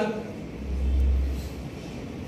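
A brief low rumble lasting about a second, starting about half a second in.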